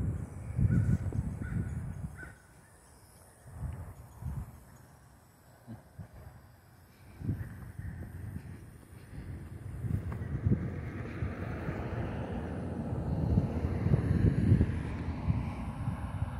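A crow cawing a few times in the first couple of seconds over low rumble from wind on the microphone, then a car approaching on the road, its noise growing steadily louder over the last several seconds.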